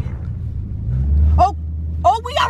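A Dodge car's engine accelerating hard, heard from inside the cabin: a deep rumble that grows louder about halfway through. The tyres are drag radials gripping on the launch rather than spinning, so there is no tyre squeal.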